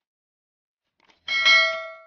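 A single bell 'ding' sound effect of the kind used for a subscribe notification bell, struck about a second and a quarter in, ringing with several clear tones and fading over about a second.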